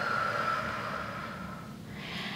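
A long audible out-breath through the mouth, a soft hiss that slowly fades away over about two seconds.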